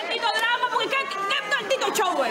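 Speech: several people talking over each other in raised voices.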